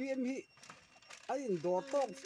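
A man talking in Mizo, close to the microphone, with a pause of about a second in the middle.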